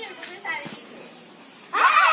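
Children playing and calling out, faint at first, then a sudden loud burst of shouting and chatter near the end.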